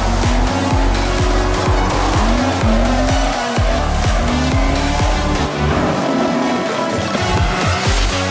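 Electronic dance music with a steady beat laid over drifting cars: engines revving in repeated rising pulls and tyres squealing as they slide.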